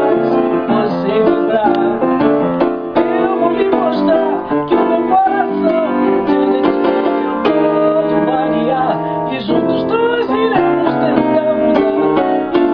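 Piano playing chords with a woman singing a wavering melody over them.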